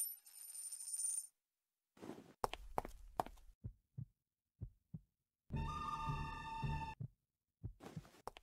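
A coin rings on a bar counter with steady high tones, stopping short about a second in. It is followed by a run of light knocks and thuds, and then a held sound with several steady tones lasting about a second and a half.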